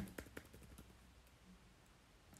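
Faint computer keyboard keystrokes: a few quick clicks in the first second, then near silence.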